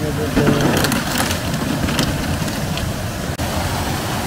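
Spring water running steadily from taps into plastic bottles, with sharp knocks as plastic bottles in a crate are handled. Near the end a small waterfall splashes.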